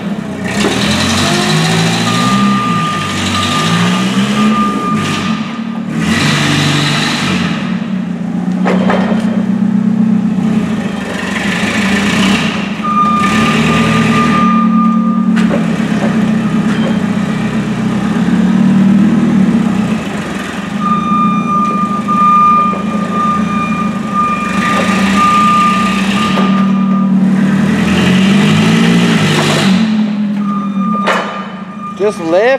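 Forklift engine running and revving up and down under load. Its reversing alarm beeps in three spells as it backs up.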